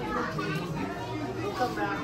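Indistinct voices of people and children around, moderately loud and not close to the microphone, with a faint steady low hum under them.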